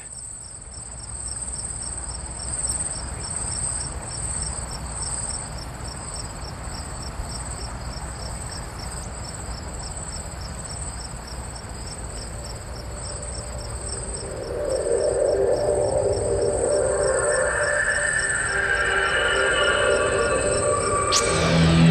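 Crickets chirping steadily in a fast, even pulse over a low background rumble. Music swells in about three-quarters of the way through.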